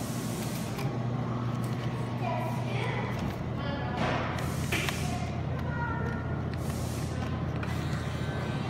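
Steady low electrical hum of a claw machine, with faint background voices and music and a couple of short knocks about four seconds in.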